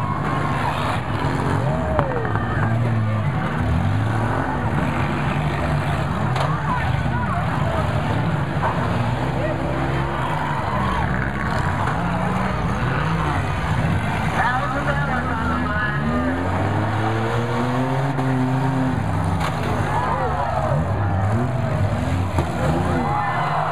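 Several front-wheel-drive demolition derby cars' engines revving up and down over one another as they manoeuvre and ram, with a sharp bang of an impact about two seconds in and voices from the crowd around.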